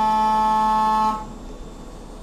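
CNC milling machine's end mill cutting a metal mould block with a loud, steady pitched whine that cuts off abruptly about a second in, leaving a quieter steady machine noise.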